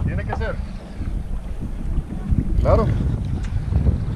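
Wind buffeting the microphone on an open boat at sea, a steady low rumble, with water sounds alongside the hull. Two short vocal exclamations break through, one just after the start and one near three seconds in.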